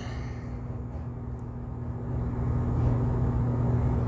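Steady low background hum with no distinct events, growing a little louder toward the end; one faint tick about a second and a half in.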